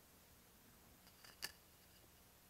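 Near silence: faint room tone, broken by one brief sharp click about one and a half seconds in, with a fainter tick just before it.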